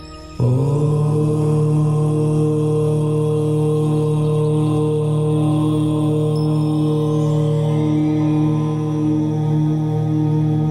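A low-pitched voice chanting one long, steadily held "Om", starting suddenly about half a second in, over an ambient meditation music drone.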